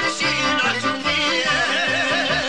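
Bosnian traditional folk (izvorna) music: a melody line sung or bowed with wide vibrato over a steady low note rhythm, with the violin's wavering line coming to the fore about one and a half seconds in.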